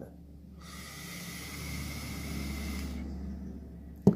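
A long draw on a vape: a steady airy hiss of air pulled through the atomizer, starting about half a second in and lasting about two and a half seconds, followed by a softer exhale of the vapour.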